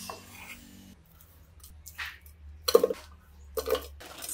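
Pieces of ginger and garlic dropped into an empty stainless steel pot. They land as a quick clatter of small knocks with a metallic ring a little past the middle, then a shorter clatter near the end.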